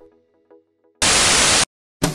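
Faint tail of background music dying away, then about a second in a loud burst of static hiss lasting about two-thirds of a second that cuts off suddenly.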